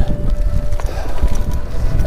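Strong wind buffeting the microphone, with bicycle tyres crunching and rattling over loose gravel.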